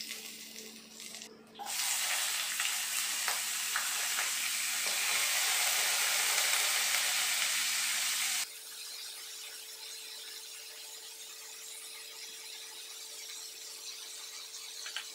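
Cumin seeds and diced potatoes frying in hot oil in a pan: a loud sizzle starts suddenly about two seconds in. About eight seconds in it drops abruptly to a quieter, steady sizzle.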